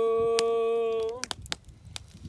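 A man's voice holding one long chanted note, steady in pitch, that stops a little over a second in; a few faint clicks follow.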